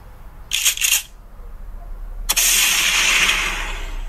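Intro sound effects: a quick volley of several sharp cracks about half a second in, then a sudden loud hissing burst a little past two seconds that slowly fades, over a low steady hum.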